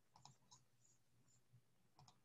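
Near silence: faint room tone with a low hum, and a few small clicks in the first half.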